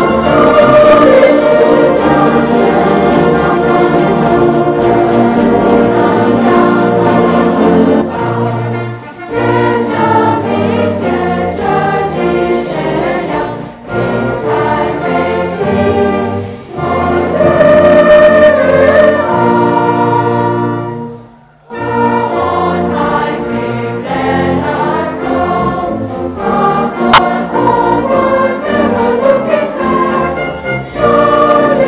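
A choir singing the school song, accompanied by a concert band, with a brief break in the music about two-thirds of the way through.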